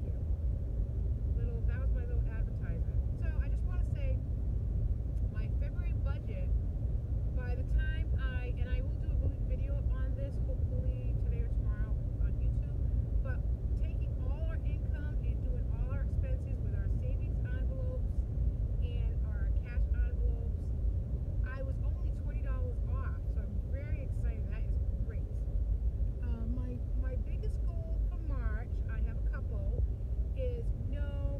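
Steady low road and engine rumble inside a moving car's cabin, with a woman talking over it throughout.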